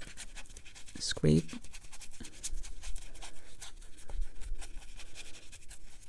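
Stiff flat wash brush scrubbing on wet cold-press watercolor paper in a quick run of short scratchy strokes. The brush is loosening dark paint so that it can be lifted.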